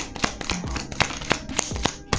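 A deck of oracle cards being shuffled by hand: a quick run of card clicks, about seven a second.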